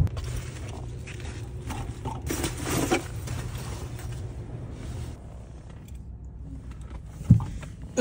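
Car interior handling noise: a low steady hum that fades out about five seconds in, with rustling and scattered clicks, and one sharp click a little past seven seconds.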